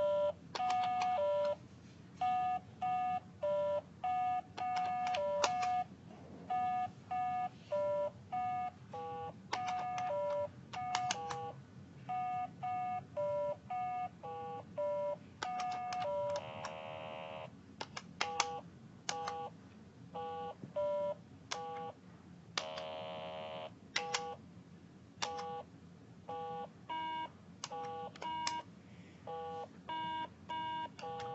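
Simon carabiner keychain memory game beeping on its own, gone crazy: a long run of short electronic tones at several different pitches, about two a second. Twice, about 16 and 22 seconds in, a longer low buzz sounds in place of the beeps.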